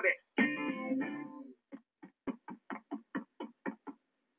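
Guitar music from a TV cartoon soundtrack, heard through the TV's speaker. A chord rings for about a second, then a quick run of short plucked notes follows, about five a second.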